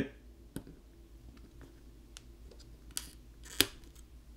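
Light clicks and ticks of a plastic opening pick prying at a small bracket inside a Google Pixel 5, a handful of separate clicks with the sharpest about three and a half seconds in.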